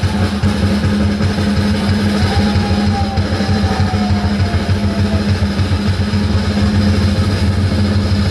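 Rock drum kit in a live drum solo: a fast, unbroken run of bass drum strokes making a dense, steady low rumble, with cymbals washing over it.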